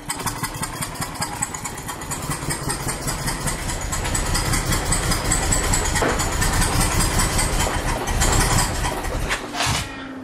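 BMW M52TU inline-six running with the spark plug blown out of cylinder two: a rapid, even pulsing, with popping that might be backfires. It grows louder through the middle and falls away just before the end.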